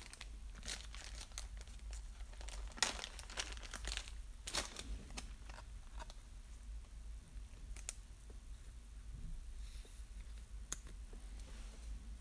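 Plastic trading-card sleeve crinkling as a card is handled and slid into it. Scattered soft crackles and clicks, the loudest a little under 3 s in.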